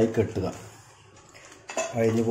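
Banana-leaf fish parcel being folded and handled on a plastic plate: low handling noise with one short rustle of the leaf near the end.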